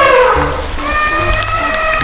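An elephant trumpeting: a long brassy call that falls in pitch as it ends, then a second long, steady call from just under a second in. Background music with a repeating bass pattern runs underneath.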